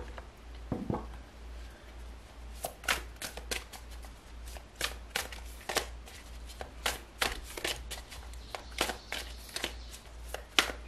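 A deck of tarot cards being shuffled by hand: quick, irregular card clicks and slaps, a few a second, starting about two and a half seconds in, after a soft knock about a second in. A steady low hum lies underneath.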